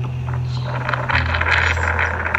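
A recorded phone call played back: a voice asking '이게 어떻게 된 거예요?' ('What happened here?'), heard as noisy, crackly phone audio. Under it runs a low sustained bass note of background music that steps to a new pitch about a second in.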